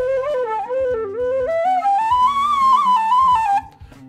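Irish tin whistle played as a short stepwise melody, its notes climbing to higher pitches partway through and falling back before stopping shortly before the end. It is a fipple whistle with a built-in mouthpiece, so the notes come out easily.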